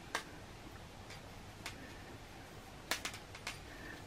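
Faint, irregular small clicks and taps from hands handling a fabric bow tie with a needle and thread during hand-sewing, with a short cluster of clicks near the end.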